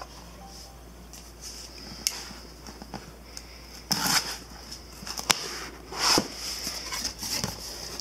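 A cardboard box being opened: a knife cutting through the seal, then the lid being lifted and handled. The sound is a few sharp clicks and short scraping, rasping rustles.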